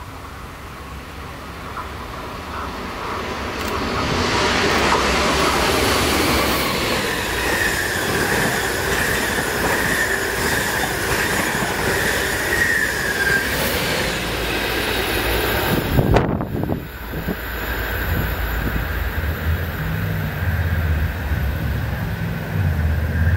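NS TRAXX class 186 electric locomotive hauling ICRm intercity coaches through a station without stopping. The rumble and clatter of wheels on rail build as it approaches, and a steady high-pitched whine runs for several seconds while the coaches pass. About two-thirds of the way in a brief sharp knock is the loudest moment, and then the running noise carries on.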